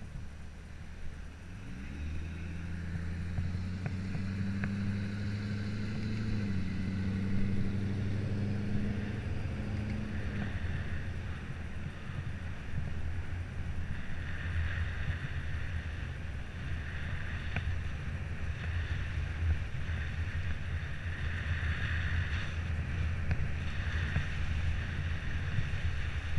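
Motorcycle engine pulling away from a stop, its pitch rising as it accelerates, with a shift to a new gear about six seconds in; after about ten seconds the engine tone gives way to steady wind rumble on the helmet microphone while cruising.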